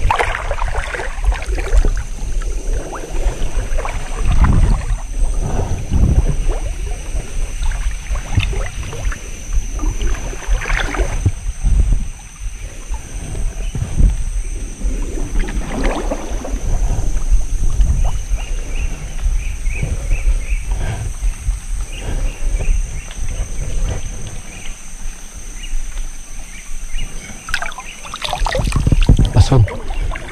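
Shallow river water sloshing and splashing in irregular surges as someone wades through it.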